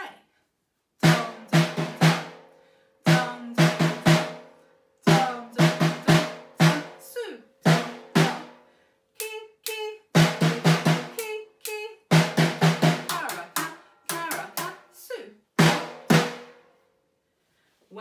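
Snare drum struck with a pair of sticks in a taiko-style rhythm: phrases of sharp hits, doubles and short runs separated by brief rests, the drum's body ringing after each stroke. The hits begin about a second in and stop a couple of seconds before the end, with lighter, thinner strokes around the middle.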